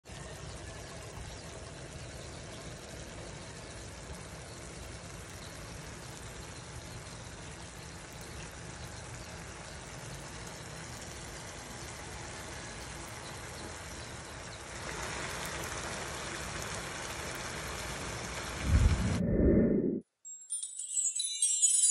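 Shrimp-paste sauce with green chilies simmering in a pan, a steady bubbling sizzle that grows louder about three-quarters of the way through. A loud low rumble comes in about a second before the end.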